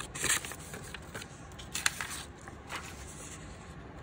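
Scissors cutting through paper: a few short snips and rustling of the sheet, the sharpest just before two seconds in.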